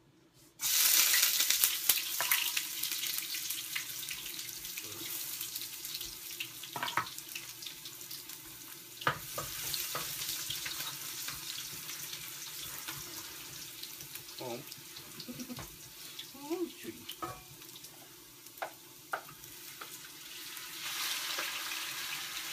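Food sizzling in hot oil in a wok. It starts suddenly about half a second in, slowly dies down, and flares up again near the end as more is poured in, with scattered clicks and knocks from the pan.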